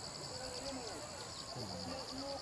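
Faint, indistinct voices under a steady, rapidly pulsing high-pitched chirr, with a thin high whistle-like tone that stops about one and a half seconds in.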